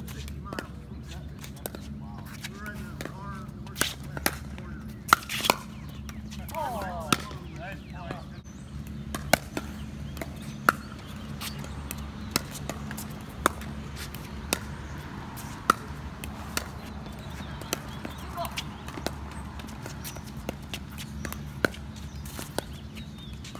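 Pickleball rally: sharp, hollow pops of solid paddles striking a plastic pickleball, with bounces on the hard court, coming irregularly every half second to a second or so.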